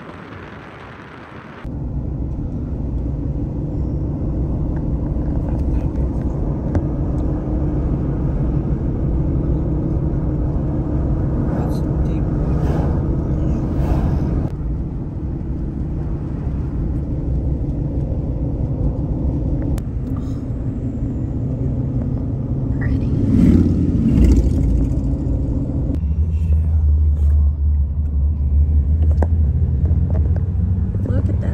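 Car driving, with steady road and engine rumble heard from inside the cabin. The rumble starts suddenly about two seconds in, after a softer hiss, and gets deeper near the end.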